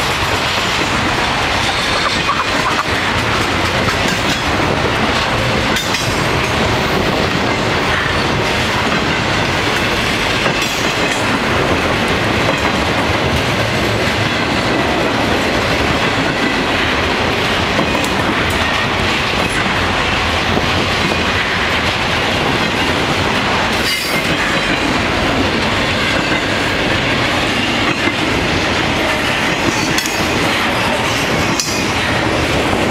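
Intermodal freight train of trailer-carrying flatcars rolling past close by at speed: a steady, loud noise of steel wheels on rail, with a few brief clanks.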